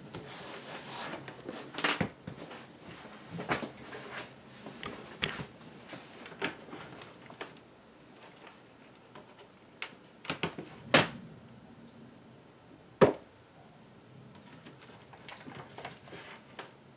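Handling noise as a laptop is lifted and moved and small round laptop-stand feet are set down on a desk: scattered knocks and rustles, with sharper clacks about two, eleven and thirteen seconds in, the last the loudest.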